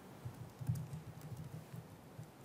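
Typing on a laptop keyboard: irregular, dull keystrokes, thickest and loudest a little before halfway through.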